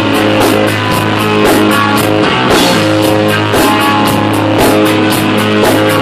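Live rock band playing an instrumental passage: electric guitar over a held low bass note, with a drum kit keeping a steady beat of drum and cymbal hits.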